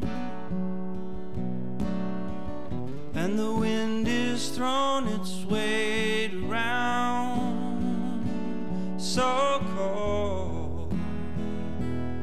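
Live soul-style song on strummed acoustic guitar with band backing, a male voice singing drawn-out notes between the lyric lines; a deeper bass part comes in near the end.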